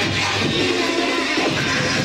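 Electronic dance music playing loud over the disco's sound system.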